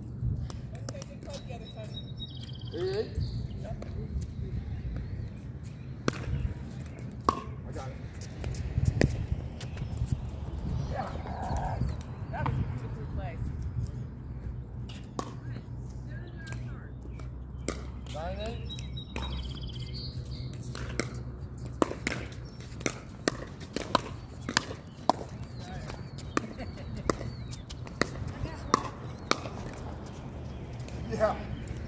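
Pickleball paddles striking a hard plastic pickleball: sharp pops scattered through, then a run of hits about one a second in the last third as a rally goes back and forth, over a steady low rumble.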